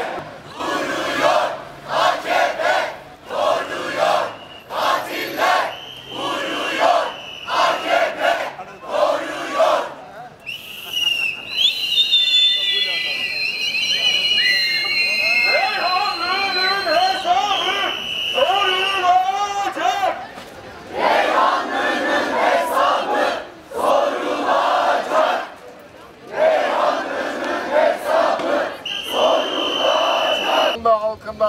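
Marching protest crowd chanting slogans in unison, in short shouted phrases about once a second. Between about ten and twenty seconds in, the chanting gives way to high, wavering calls, and then the rhythmic chanting resumes.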